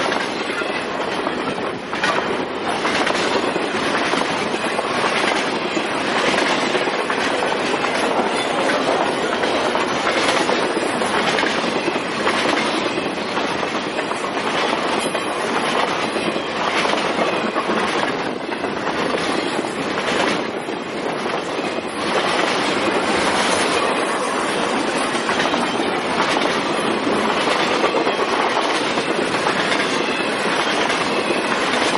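Canadian Pacific double-stack intermodal freight cars rolling past close by: a steady, loud rush of steel wheels on rail, with repeated clacks over the rail joints.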